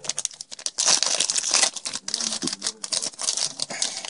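A Yu-Gi-Oh! Duelist Pack's foil wrapper being torn open and crinkled by hand: a dense, irregular crackling.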